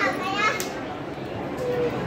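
People talking in a busy public place, with a high-pitched voice calling out briefly at the start and a single sharp click about half a second in.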